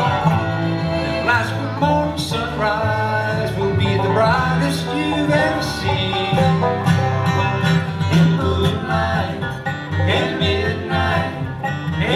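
Live acoustic bluegrass band playing: banjo, fiddle, dobro and guitar, with some sliding notes, over upright bass notes.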